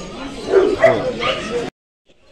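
A dog giving a few short, pitch-bending cries, loudest from about half a second in, which end abruptly before the close.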